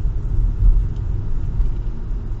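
Car driving at a steady, moderate town speed of about 40 km/h, heard from inside the cabin: a steady low rumble of engine and tyre noise.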